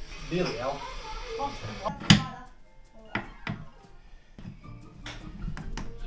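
Talking over background music, then one loud sharp knock about two seconds in, followed by several lighter knocks and clicks.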